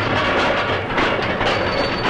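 Letterpress platen printing machine running, a steady rhythmic mechanical clatter of about two strokes a second.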